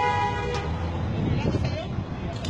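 A horn sounding one steady, multi-pitched note that cuts off about half a second in, over constant low rumbling background noise.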